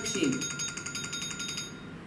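An electronic ringing tone, high and rapidly trilling, that cuts off suddenly near the end, over the tail of a voice at the start.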